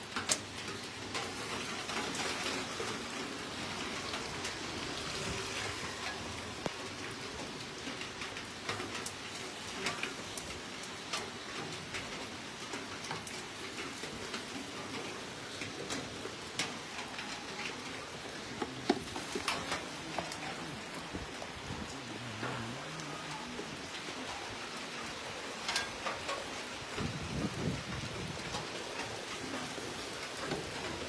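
Steady rain falling on pavement and a roof, an even hiss with scattered sharp ticks of drops. A low rumble rises briefly near the end.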